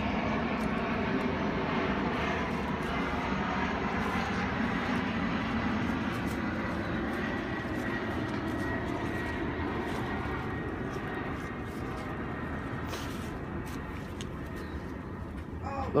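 Steady hum of a distant engine, many tones together, slowly fading away, with faint light rustles of strawberry leaves being handled.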